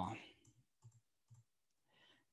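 A spoken word trails off, then near silence broken by a few faint computer-mouse clicks, the clearest a little under a second in and about half a second later, as a presentation slide is advanced.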